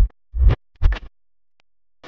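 DJ dance remix playing through the stage sound system in short, choppy bass-heavy bursts with record-scratch effects, then dropping out for about the last second.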